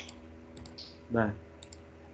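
A few faint clicks of a computer mouse, the sharpest right at the start, over quiet room tone, with one short spoken syllable just after a second in.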